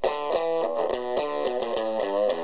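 Electric guitar through a Fender Mini Twin mini amp with the drive all the way up, playing a run of notes at about five a second. The tone is gnarly and distorted, with a weird overtone almost like an octave divider effect.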